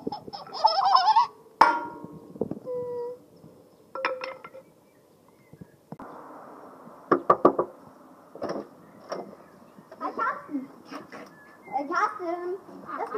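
A child's high, wavering squeals and laughter, with scattered sharp clicks and knocks and a cluster of knocks about seven seconds in.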